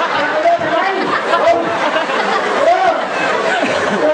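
Crowd of spectators chattering, many overlapping voices with no single clear speaker.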